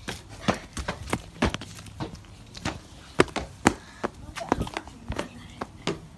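Footsteps and close knocks, irregular, about two or three a second, loudest a little past the middle.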